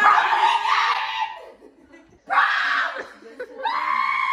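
A group of girls shrieking and laughing in greeting, in two bursts: a long one at the start and a shorter one a little past two seconds in.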